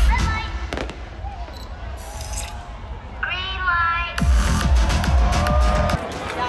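Electronic dance music with heavy bass from a festival stage sound system, cut between clips. The bass drops away for a couple of seconds in the middle. Shouting crowd voices and a few sharp bangs come through the mix.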